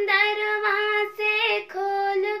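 A girl singing a Hindi poem unaccompanied, holding long, steady notes with short breaks between phrases.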